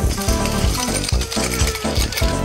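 Background music with a fast, steady beat of about four beats a second and bright, jingling percussion on top.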